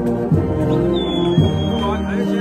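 Brass band playing a hymn in sustained chords, with a bass drum beat about once a second. A thin high steady tone comes in about three-quarters of a second in and holds.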